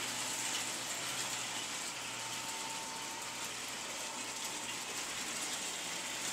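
1953 American Flyer Silver Rocket S-gauge freight train running steadily around the track: the twin-motor Alco diesel unit's motors and the wheels on the rails make a continuous mechanical running noise, with a low hum that drops away about two and a half seconds in.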